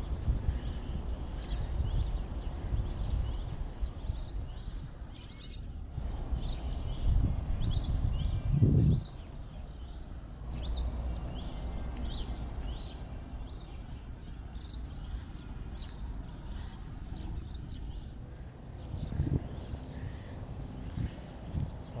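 Many birds chirping and calling in short, quickly repeated high notes, over a low rumbling background noise that swells louder about eight seconds in.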